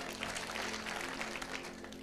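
Crowd applauding: a burst of hand-clapping right after a player's introduction, over soft steady background music.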